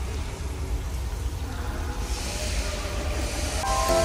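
Steady low rumble with a soft hiss that swells about halfway through; background music comes in near the end.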